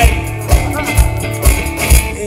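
Live rock band playing: amplified electric guitar over a drum kit, with a kick drum on a steady beat of about two a second.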